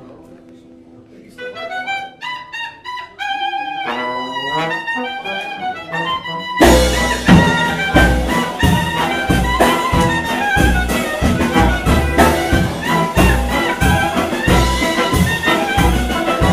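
Live klezmer band starting a march: after a quiet second, a lone melody instrument plays slow, stepped phrases, and about six and a half seconds in the full band (accordion, clarinet, double bass, trombone and drum kit) comes in much louder with a steady bass-drum beat.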